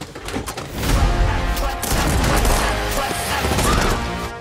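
Dramatic trailer music mixed with rapid, continuous bursts of gunfire, loud from about a second in.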